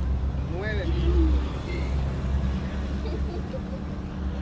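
Low, steady rumble of a motor vehicle engine idling, with a brief faint voice about a second in.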